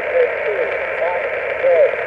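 Yaesu FT-817 receiving lower-sideband on 7.110 MHz through its speaker: steady band hiss cut off above and below the voice range, with faint garbled voices of weak stations underneath.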